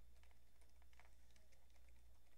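Faint, irregular clicks of a computer keyboard over a steady low hum.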